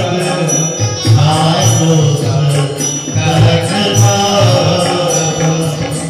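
Devotional Indian song: singing over sustained instrumental tones, with a hand drum keeping a steady beat.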